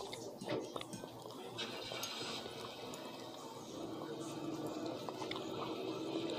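Faint clicks and scrapes of a knife and fork working meat off grilled turkey wings in a bowl.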